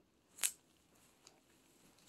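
A single brief, crackly scuff about half a second in and a much fainter tick later, with near silence between them.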